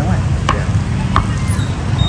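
A kitchen knife cutting a block of ice cream on a cutting board, with two short knocks of the blade against the board. Steady crowd and traffic noise of a busy street market underneath.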